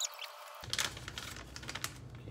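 A clear plastic piping bag crinkling and crackling as it is handled and pulled open by hand, in a few short irregular crackles.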